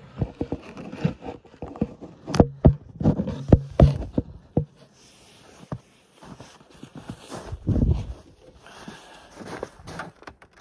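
Irregular knocks and clatter of a camera being handled and set in place, mixed with footsteps in snow, then a louder low rumble near the end.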